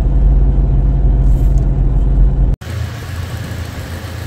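Steady low rumble of road and engine noise inside a Toyota Fortuner's cabin while driving; about two and a half seconds in, it cuts off abruptly to a quieter steady low hum.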